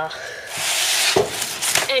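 Paper rustling and rubbing as a large spiral-bound instruction book is handled and opened, with a couple of light knocks.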